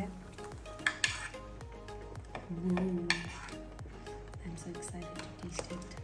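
A metal spoon clinking and scraping on a porcelain plate as seafood and sausage pieces are pushed off it into a pot of broth, with a few sharp clinks about a second in and again near three seconds.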